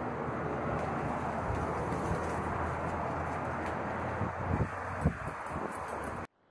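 Steady outdoor background noise, with a few footsteps thudding on concrete stairs about four and a half to five seconds in.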